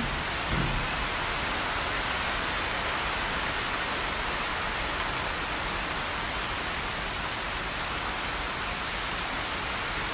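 Heavy typhoon rain falling steadily, a continuous even hiss.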